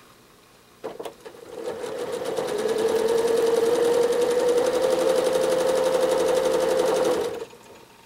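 Janome Horizon 7700 sewing machine stitching free-motion quilting. It starts about a second in, speeds up over a couple of seconds to a steady fast stitching run with an even hum, and stops shortly before the end.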